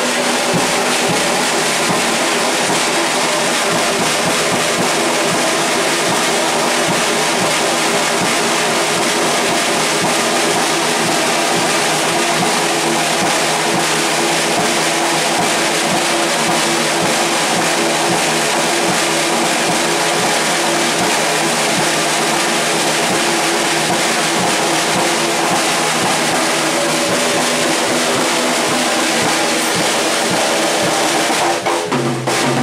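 Small jazz band playing live, with pocket trumpet and drum kit, a dense, steady sound of several instruments at once.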